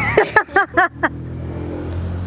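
Women laughing: a quick run of about five pitched "ha"s over the first second, then a steady low hum carries on underneath.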